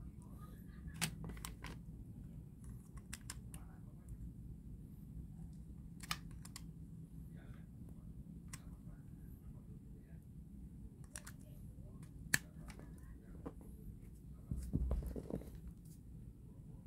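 Faint scattered clicks and handling noise of a plastic USB car charger adapter and cable being turned in the hands and a USB plug pushed into its port, with one sharper click late on and a low rumble of handling near the end.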